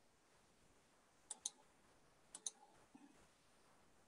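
Faint computer mouse clicks over near-silent room tone: two quick double clicks about a second apart.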